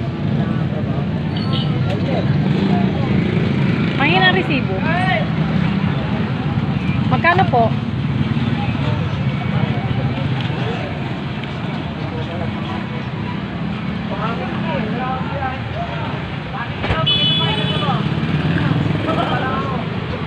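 Steady low rumble of passing motor traffic, growing louder about three seconds before the end, with people's voices talking over it at times.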